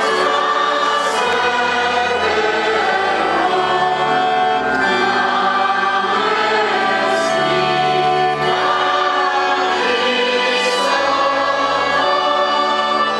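A choir singing a slow hymn in sustained, held chords, with the bass moving to a new note every second or two.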